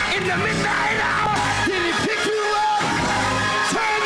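Gospel praise break music slowed down and pitched low (chopped and screwed): a man's voice shouting and singing with long sliding notes over the band's steady bass.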